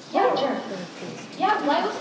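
Speech: a young person's voice, loud at the start and again near the end.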